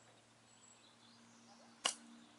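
Golf club striking the ball on a chip shot: a single crisp click near the end.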